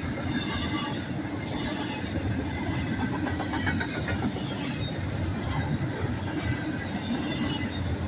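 Double-stack intermodal well cars rolling past, a steady, even rumble of steel wheels on rail with brief high wheel squeaks now and then.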